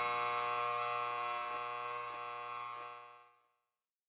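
A held electronic tone with many even overtones, slowly fading and cutting off about three seconds in. A few faint ticks sound partway through.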